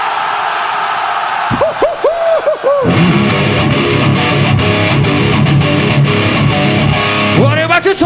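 Crowd noise, then an electric guitar plays a quick run of swooping pitch bends. About three seconds in, the full rock band kicks in with drums, bass and distorted guitar, loud and steady.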